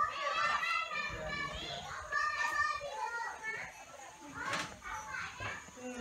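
Children's voices in the background: high-pitched chatter and calls of children at play, with one short sharp click about four and a half seconds in.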